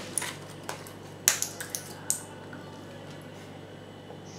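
Small handling clicks and knocks as a pill and a mug are picked up: a handful of short, sharp clicks over the first two seconds, the loudest about a second and a quarter in. After that only a low steady hum remains.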